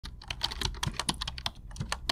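Rapid typing on a computer keyboard: a quick, uneven run of key clicks, about eight to ten a second, over a low steady hum.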